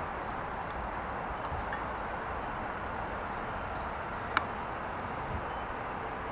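A steady, distant rumble of jet engines from a taxiing airliner at idle thrust, with a single sharp click about four seconds in.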